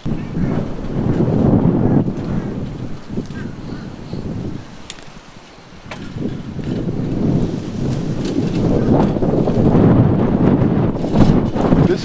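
Wind buffeting an outdoor microphone: a rough low rumble that swells and fades, dropping away briefly about five seconds in before building again.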